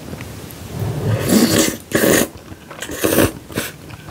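Close-miked slurping of spicy buldak noodles with melted mozzarella, several loud slurps starting about a second in.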